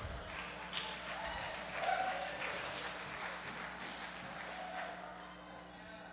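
Congregation responding in a large hall with faint scattered clapping and voices, over a low steady hum. It dies away toward the end.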